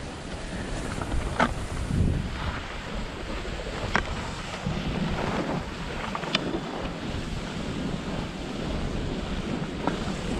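Wind buffeting a pole-mounted GoPro's microphone during a downhill ski run, with the steady hiss and scrape of skis on packed snow. Three sharp clicks come through about a second and a half, four, and six and a half seconds in.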